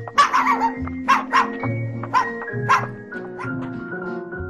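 A puppy yapping in a quick string of about six short, high barks over the first three seconds, over background music with sustained notes.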